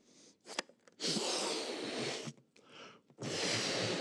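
A man blowing hard into a rubber balloon twice, each blow a long rush of breath lasting about a second, with a short intake of breath before each, close to his headset microphone.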